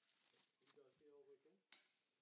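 Near silence, with a faint, distant voice speaking for about a second in the middle.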